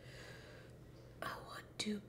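A woman's short breathy, whispered exhale about a second in, over a faint steady low hum, with the start of her speaking at the very end.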